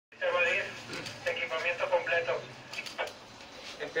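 Speech over a two-way radio: a voice talking for about two seconds, then quieter, with a few short clicks about three seconds in.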